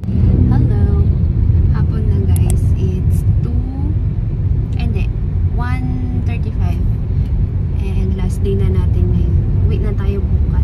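Steady low rumble of a car's engine and tyres heard inside the cabin while driving, with a woman's voice talking over it.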